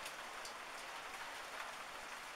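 Hailstorm: a steady patter of falling hail and rain, with faint scattered ticks.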